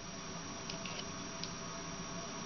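A few faint, short plastic clicks as a micro SD card is pulled out of a small USB card-reader adapter, over a steady low room hum.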